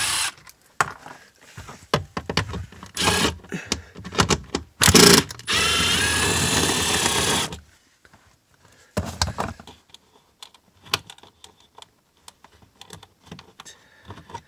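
Milwaukee M12 Fuel impact driver backing out 8 mm bolts. It runs in several short bursts, with a longer run of about two seconds just past the middle, then light clicks and knocks.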